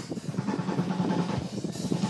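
A drum kit played live: a fast, dense run of drum hits with cymbals.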